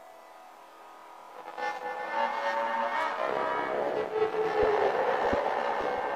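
Intro of a hard techno track: a dense, noisy swell with held tones rises about a second and a half in. A few irregular low thumps come near the end.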